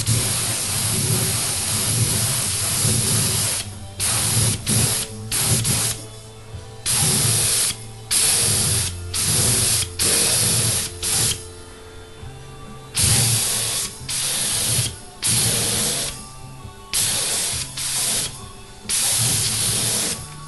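A top-cup spray gun sprays thinned lacquer onto a guitar top in hissing bursts as the trigger is pulled and released. A first burst lasts about four seconds, followed by many short bursts of under a second each.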